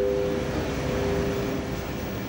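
Steady low drone of an airliner cabin in flight, with a held two-note chime tone fading away over the first second or two.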